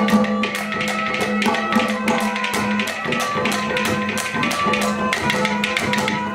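Live Haryanvi ragni accompaniment with no singing: a harmonium holds a steady low note under a melody, over quick hand-drum strokes played several times a second.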